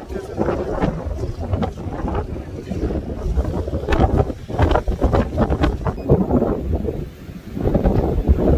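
Strong wind buffeting the camera microphone, a heavy low rumble that eases briefly near the end, with a voice faintly mixed in.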